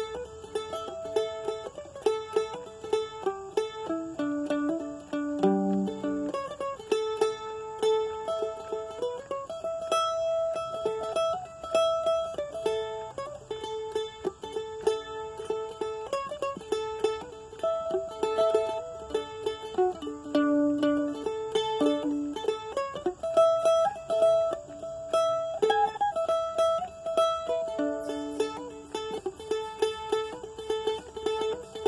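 Solo mandolin picked with a plectrum, playing a melody as a steady stream of picked notes.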